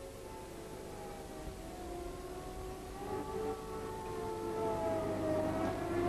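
Civil-defence air-raid siren wailing, several tones gliding slowly up and down in pitch and growing gradually louder.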